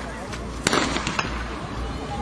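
Starter's pistol fired once for a sprint start, a single sharp crack about two-thirds of a second in, followed by a smaller click.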